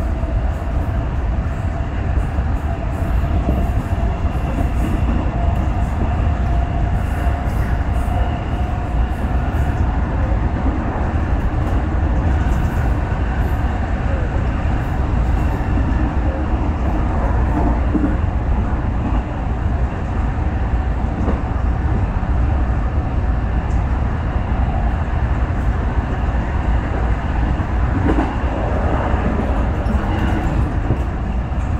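JR West 221 series electric train running at speed, heard from inside the driver's cab: a steady, even rumble of wheels on rail.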